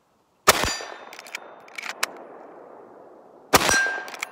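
Two shots from a pre-1964 Winchester Model 1894 lever-action rifle in .32 Winchester Special, about three seconds apart, each with a ringing clang of a steel target being hit. A few light clicks of the lever being worked come between the shots.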